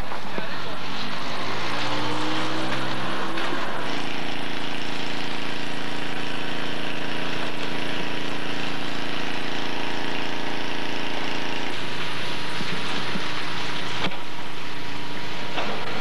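A vehicle engine running, its pitch rising over the first few seconds as it speeds up, then holding a steady note; the sound changes about twelve seconds in.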